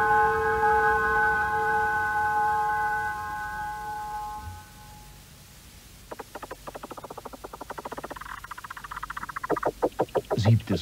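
Orchestral music: a sustained chord, following mallet percussion, fades away over about five seconds. About six seconds in, a rapid, even pulsing starts and grows louder to the end.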